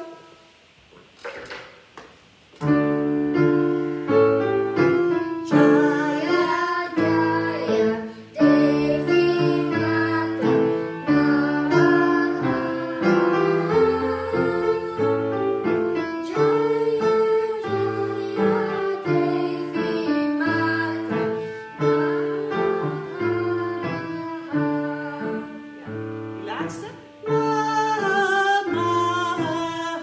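Yamaha piano playing a children's song, coming in about two and a half seconds in, with a girl and a woman singing along.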